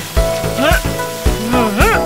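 Water spraying from a fire hose with a steady hiss, over the backing of a children's song with a regular beat. Two swooping, siren-like rise-and-fall tones come about two-thirds of a second in and again near the end.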